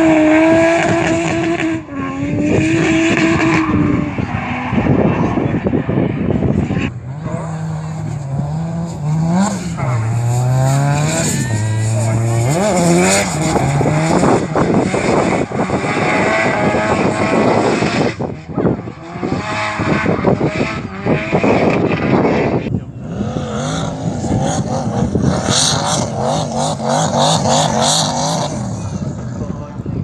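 Drift car engine revving hard, its pitch climbing and dropping again and again as the throttle is worked through a slide, over the hiss of spinning tyres.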